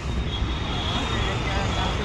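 Steady low rumble of street traffic with indistinct voices of people nearby.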